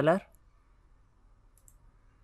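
Faint computer mouse clicking near the end, as a colour is picked in a software dialog.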